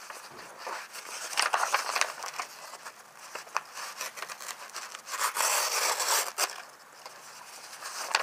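A sheet of paper being sliced by the edge of a Smith & Wesson SW3B M9 bayonet. Two slicing strokes come at about a second and a half in and again around five seconds in, with the paper rustling as it is handled between them. The cuts are clean, the sign of a very sharp edge.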